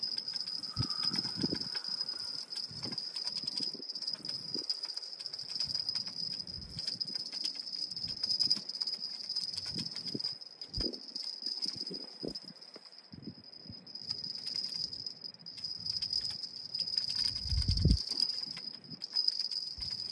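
Steady, high-pitched chirring of insects, with low gusts of wind buffeting the microphone, the strongest gust just before the end.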